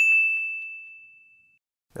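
A single bright ding sound effect: one bell-like tone struck once, fading away over about a second and a half.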